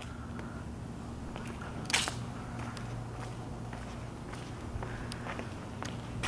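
Faint footsteps and camera-handling clicks over a low steady hum, with one sharper click about two seconds in.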